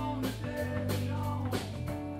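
Live blues-rock band playing: electric guitar and bass guitar notes over a drum kit keeping a steady beat with regular cymbal strokes.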